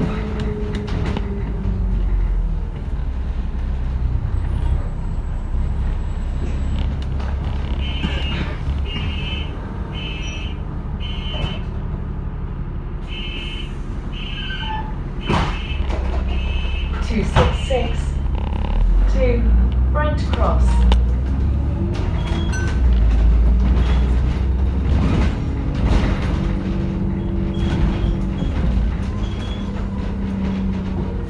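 Alexander Dennis Enviro400 double-decker bus on the move, heard from the upper deck: engine running with a low drone and body rattles. A run of short high beeps sounds in the middle.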